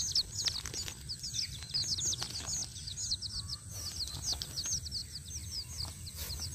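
Chicks peeping without pause: many high-pitched, quick, falling chirps, several a second, with a few faint clicks of handling under them.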